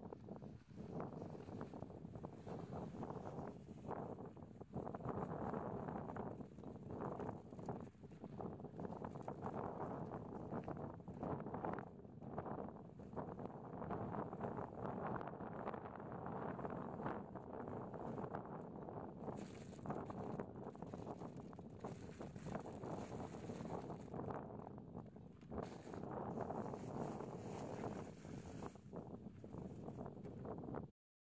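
Wind buffeting the microphone: an uneven, gusting rumble and hiss that never lets up, with brief harsher gusts about two-thirds of the way in and again near the end.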